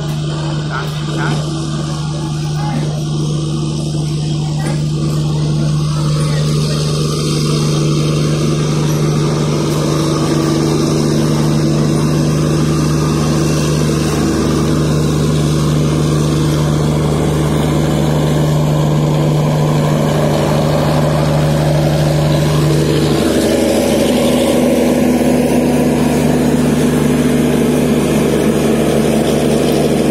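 Express train coaches rolling slowly past at close range: a steady rumble of wheels on rail under a strong, steady hum. The sound grows louder as the rear Luggage Brake & Generator Car, with its diesel generator running, draws level. The hum changes pitch about three quarters of the way through, as the generator car comes alongside.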